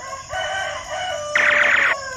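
Rooster crowing a cock-a-doodle-doo, the last long note the loudest and falling in pitch near the end.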